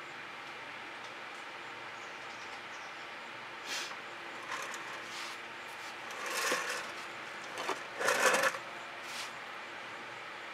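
Handling noise of a stretched canvas being shifted and turned on a work table: a few short scrapes and knocks from about four seconds in, the loudest a little after eight seconds, over a steady faint hiss.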